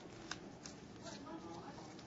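Faint rustling and a few sharp snaps of disposable examination gloves being pulled onto the hands, the sharpest snap a little after the start.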